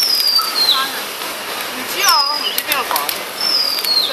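A bird singing short whistled notes that fall in pitch, again and again about every second, over the crinkle and rustle of foil and plastic being handled.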